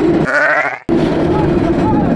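Riders yelling on the Montu inverted roller coaster, over wind rush on the microphone and the noise of the coaster running on its track. The sound drops out abruptly just under a second in, then the wind and track noise carry on with a steady hum.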